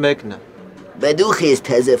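A man speaking: a brief phrase at the start, then about a second of animated talk with a wavering, bending pitch from about a second in.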